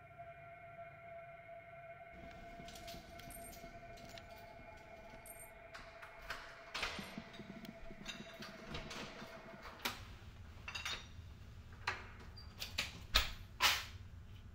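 Keys clicking in a door lock and an apartment door being unlocked and opened, followed by a series of sharp knocks and thumps of the door and handling, the loudest a heavy thump near the end. A faint steady hum sits under the first half and fades out.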